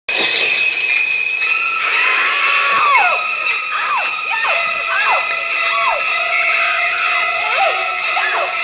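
Eerie soundtrack laid over the opening titles: high tones held steady, with swooping glides that rise and fall about once a second.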